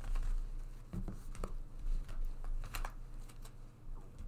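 Tarot cards being gathered up and stacked by hand off a cloth-covered table: a scatter of light clicks and slides as the cards are picked up.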